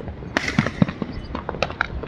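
Fireworks going off: a rapid, irregular run of bangs and pops, the loudest burst a little under half a second in.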